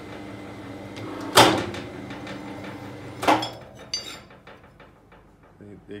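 ICARO combined rebar cutter-bender's electric motor and gearbox running as the bending table turns and bends a steel rebar to 90 degrees: a steady hum with a loud metal clank about a second in and another about three seconds in. The hum dies away after the second clank, and a brief metallic ring follows.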